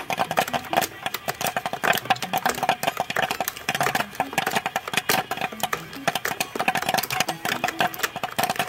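Popcorn-machine sound for a toy popcorn maker as it fills its bucket with play-dough popcorn: a fast, dense run of clicks and crackles over a steady hum.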